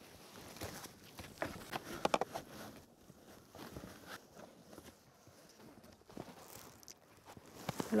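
Faint rustling and light clicks of a car seat belt's webbing and latch plate being threaded through a child car seat's belt path, with a small cluster of clicks about two seconds in.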